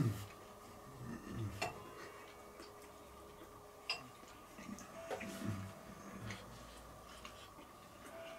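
Faint, sparse clinks of a spoon against a dish while eating hot stew: three or so sharp ticks a second or two apart, with soft low knocks between them.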